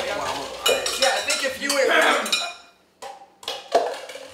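Stainless steel cooking pot and its lid clattering: a quick run of metal clanks with a bright ring, then a short pause and a few lighter knocks near the end.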